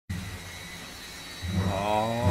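Steady faint hiss, then, about one and a half seconds in, a thick felt-tip marker squeaking on the canvas as it draws a long stroke, a pitched squeak slowly rising.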